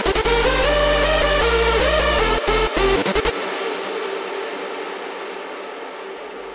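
Electronic dance music lead synth with a heavy sub bass playing back, drenched in long reverb. About three seconds in the notes and bass stop and a long reverb and delay tail fades out.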